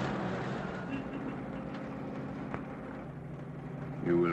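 Car engine running with a steady low hum as the car drives along, its pitch stepping up slightly about a second in.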